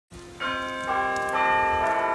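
Bell-like chime: three ringing notes struck about half a second apart, each left to ring on so that they overlap.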